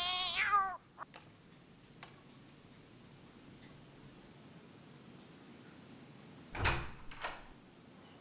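A young woman's drawn-out distressed wail, wavering in pitch, fading out within the first second. Then low room tone, broken about six and a half seconds in by two short thuds, the loudest sounds here, typical of the bathroom door being opened.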